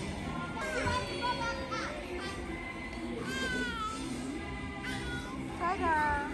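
Young children's high-pitched squeals and calls while playing, a few rising and falling cries, over background music and the steady hubbub of a busy play hall.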